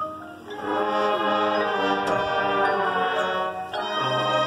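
A marching band playing: soft mallet-keyboard notes step upward, then about half a second in the full band comes in with a loud held chord that swells and changes near the end.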